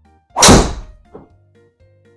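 A driver striking a teed golf ball in a full-power swing of about 57 m/s head speed: one sharp, loud impact about half a second in that dies away quickly, followed by a much fainter thud just over a second in.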